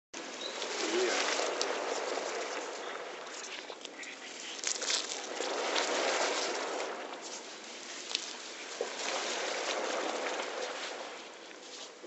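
Caustic soda (sodium hydroxide) dissolving in water in a plastic bucket, giving a steady fizzing hiss with scattered crackles as the solution heats up.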